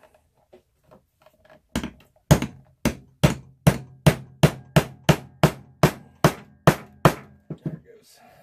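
Small hammer striking repeatedly to set a rivet through the layered leather of a knife sheath on a wooden board. There are about fourteen even blows at roughly two and a half a second, starting about two seconds in and ending with a couple of lighter taps near the end.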